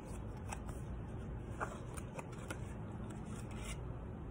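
Faint rustling and a few small clicks of a cardboard board book's pages being handled and turned, over a low steady background hum.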